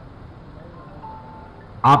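Low steady background noise through a public-address system, with a brief faint high tone about a second in; a man's amplified voice starts again near the end.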